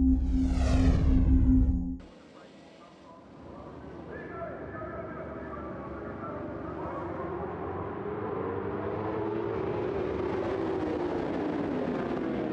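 A sweeping whoosh sound effect over a low drone that cuts off about two seconds in. Then a pack of superbikes accelerates away from a race start, many engines revving with pitch rising and falling, growing steadily louder.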